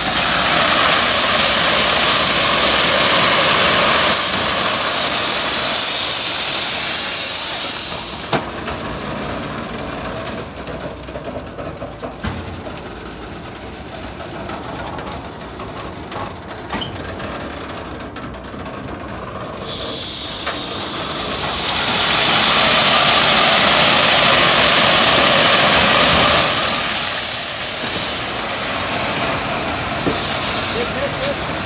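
Railway ballast hopper wagons rolling slowly past and discharging crushed stone through their bottom chutes onto the track. A loud rushing hiss comes twice, each time for about eight seconds, with a quieter stretch of rumbling and scattered stone clicks between.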